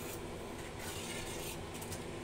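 Steel ladle stirring a watery curry in a steel pan, rubbing and scraping against the metal with a few faint clinks, over a steady low hum.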